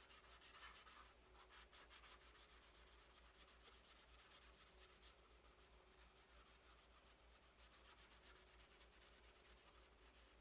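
Faint, quick strokes of a small paintbrush over a painting: a soft, rapid scratching that goes on throughout and is a little stronger in the first second or two.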